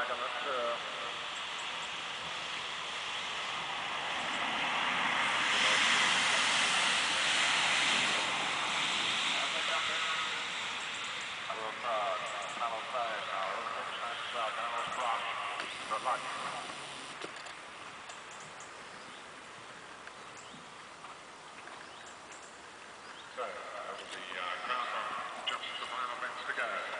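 Outdoor ambience: a broad rushing noise swells for a few seconds and then fades away, with faint voices in the background.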